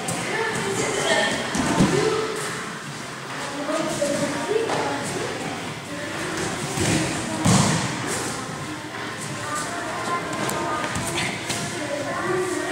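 Judo players being thrown and landing on the mats with heavy thuds. The two loudest thuds come about two seconds in and about seven and a half seconds in, with indistinct voices in the hall throughout.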